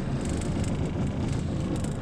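A boat's outboard motor running steadily at low speed, a constant low rumble.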